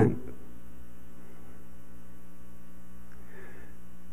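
Steady electrical mains hum on the sound-system feed, a constant low buzz that does not change.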